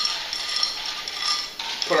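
Crushed ice crunching and clinking as it is packed by hand into a tall glass.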